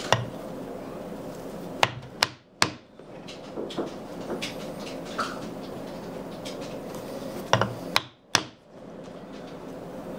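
Poly mallet tapping a thin metal punch through leather onto a poly board on a granite slab. Sharp taps come in quick runs of three, about 0.4 s apart: one tap at the start, a run about two seconds in and another about eight seconds in.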